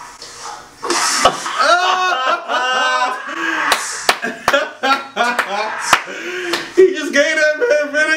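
Men laughing hard, with about six sharp hand claps scattered through the laughter.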